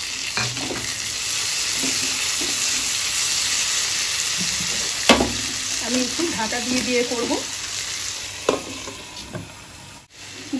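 Potato and tomato pieces sizzling in hot oil in a non-stick kadai, stirred with a plastic slotted spatula that knocks against the pan, the sharpest knock about five seconds in. The sizzling fades near the end.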